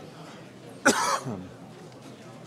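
A single loud cough close to the microphone, about a second in, over a faint murmur of people in the hall.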